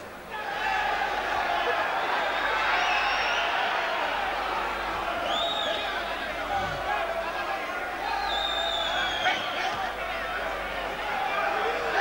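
A large boxing crowd shouting and cheering in a steady, dense roar of voices during an exchange of punches. A few high calls rise above it now and then.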